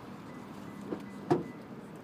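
Low steady hum inside a parked car, with a faint click and then one brief sharp sound a little past halfway.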